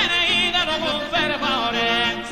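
A man's solo voice singing a long, heavily ornamented Sardinian canto a chitarra line (mutu prolungadu), its pitch curling and wavering through melismas over a steady held accompaniment.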